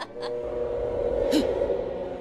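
A short breathy gasp from a cartoon character, over sustained low notes and a low rumble.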